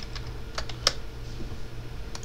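Computer keyboard keystrokes typing a short phrase: a handful of quick, irregular key clicks, the sharpest a little under a second in, over a steady low hum.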